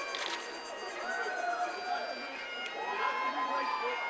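Bagpipes playing, steady drone tones under a melody, with voices in the background.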